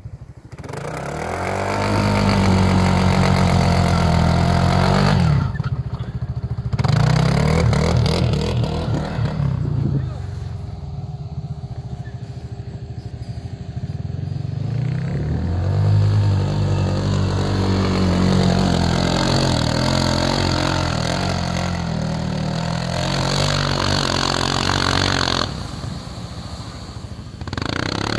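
Side-by-side UTV engine revving hard in long bursts as it struggles to climb through deep snow, easing off between tries. It eases twice, about six seconds in and again for several seconds around the middle.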